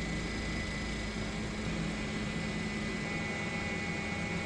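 Steady drone of a helicopter's engine and rotors, with a low hum and a faint constant high whine.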